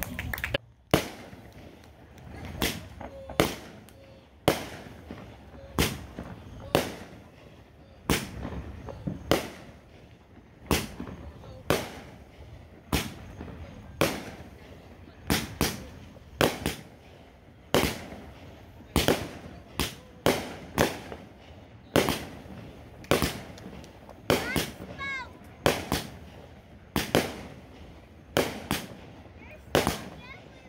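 Aerial firework shells bursting one after another, a sharp bang about once a second, each trailing off in an echo.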